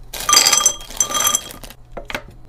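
Foil-wrapped chocolates poured into a glass canister, rattling and clinking against the glass in two pours of about half a second each, with the jar ringing.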